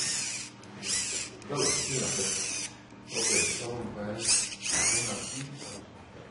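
Small electric motor whirring in about six short bursts, each with a pitch that rises and falls.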